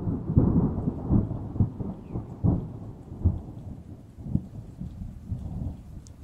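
Thunderstorm: rolling thunder with rain, several loud cracks in the first half, the rumble fading toward the end.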